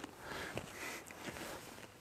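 Faint breaths and small movement sounds from a man doing bodyweight air squats, with a few light clicks.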